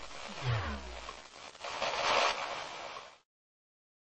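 Electronic background music with a falling bass note repeating about once a second over a low drone, then a short burst of hiss about two seconds in. The sound cuts off suddenly a little after three seconds.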